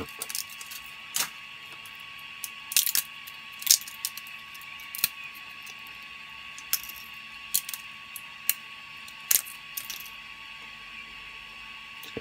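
Sharp little plastic clicks and snaps, about nine of them at irregular intervals, as printed support material is picked and broken off a freshly 3D-printed PLA part, over a faint steady hum.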